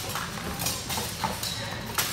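Footfalls and sharp knocks from two fencers stepping and striking on a hardwood gym floor during a spear-and-shield versus longsword exchange. About half a dozen sudden clacks are spread unevenly over the two seconds.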